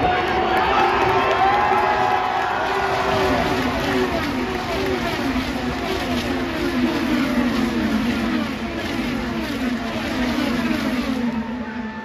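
A pack of IndyCars, each with a 2.2-litre twin-turbo V6, passing at racing speed: a long string of overlapping engine notes falls in pitch as car after car goes by, tailing off near the end. A crowd cheers underneath.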